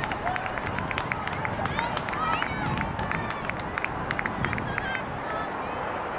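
Outdoor ambience of a youth soccer match: indistinct, distant calls and shouts from players and spectators, with many short high chirps, over a steady low background noise.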